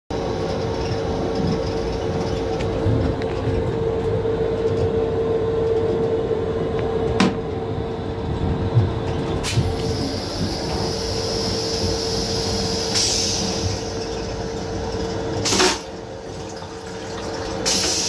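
Metro-North M7 electric railcar heard from inside its restroom: steady running rumble with a steady hum, broken by a few sharp clicks and knocks and a stretch of hiss midway. About three-quarters in the hum cuts off and the noise drops.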